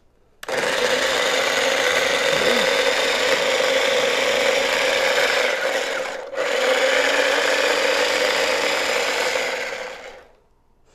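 Small electric food chopper running, its blade chopping half an onion. The motor runs for about six seconds, stops for an instant, then runs again until the very end.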